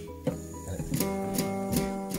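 Nylon-string classical guitar strummed on its open strings by a motorised Lego strumming arm: about four strums, the strings ringing on between them.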